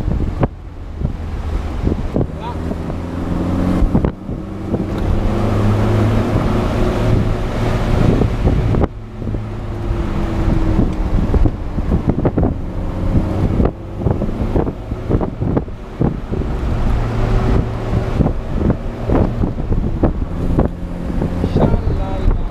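1972 Alfa Romeo Spider 1600's twin-cam four-cylinder engine pulling along the road, its revs climbing and falling back several times through the gears. Wind buffets the microphone in the open car.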